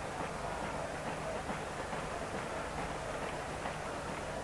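Steady noise of a large football stadium crowd.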